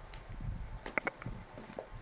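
Tarot cards being cut and laid down by hand on a cloth-covered table: a few faint taps and slides, the clearest about a second in.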